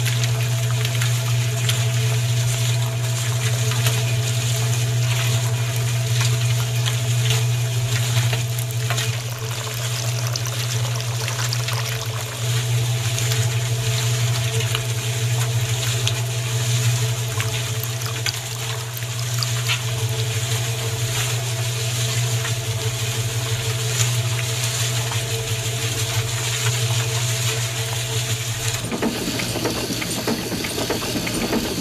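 Small electric motor of a miniature model cement mixer running with a steady low hum under a constant hiss. Near the end the hum stops and a different mechanical noise takes over.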